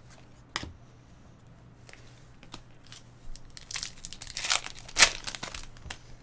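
Crinkling and tearing of a Topps Finest trading-card pack wrapper as it is opened, a run of crackly rustles that starts about halfway through and is loudest about five seconds in. A single light click comes just after the start.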